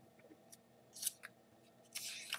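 Sheets of paper being moved and handled on a desk: a few short, quiet rustles, the loudest about a second in, with more starting near the end.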